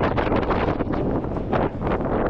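Wind buffeting an action camera's microphone: a loud, steady rushing noise that flickers with the gusts and drops briefly near the end.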